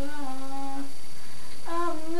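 A young woman's unaccompanied singing voice holding one note, sinking slightly in pitch, for about a second, then a short pause before the next sung phrase begins near the end.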